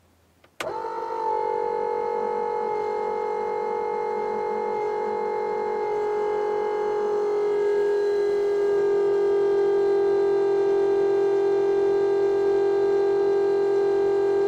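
Cheap electric oil pump of a homemade engine pre-oiler starting suddenly about half a second in and running with a steady, loud whine, its pitch settling a little lower once it takes up the load. It is forcing engine oil through a 5/16-inch hose to prime the engine before startup, building only about 15 psi, and the owner calls it very noisy.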